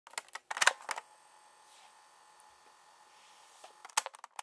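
A handful of sharp mechanical clicks, then a faint hiss with thin steady tones under it, then another quick run of clicks near the end.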